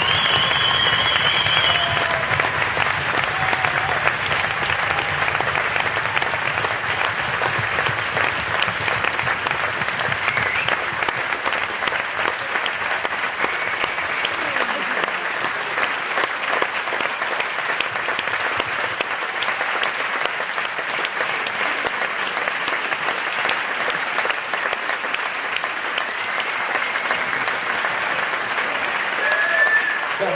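Audience applause, dense and steady, a little louder in the first few seconds and then settling.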